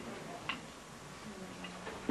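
A single light click about half a second in, over quiet room noise.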